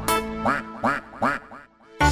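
Four duck quacks, about two and a half a second, over the backing music of a children's song. The music and quacks fade away near the end.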